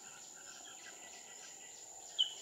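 A steady high-pitched insect drone, with a few faint, distant bird chirps.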